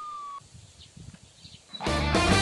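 A police siren's steady high tone, rising slightly, cuts off about half a second in. After a quieter stretch, loud music with guitar starts near the end.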